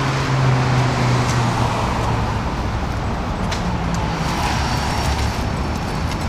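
City street traffic: a vehicle engine's steady low hum under the wash of road noise.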